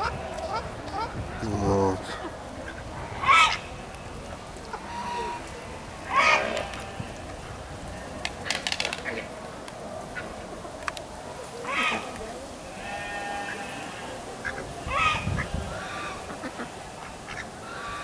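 Geese and ducks calling in an aviary: about five short, loud honking calls a few seconds apart, with quieter bird calls between them.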